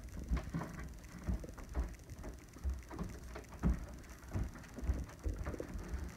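Irregular soft thumps and clicks of someone walking up to a door and handling a suit jacket on a metal hanger hooked over the door.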